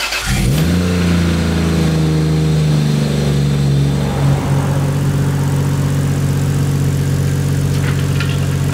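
Toyota Chaser JZX100's turbocharged straight-six catching on the starter, revving up briefly, then settling into a steady idle.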